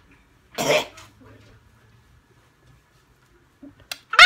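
A woman coughs once, sharply, about half a second in, just after downing a shot of pickle juice.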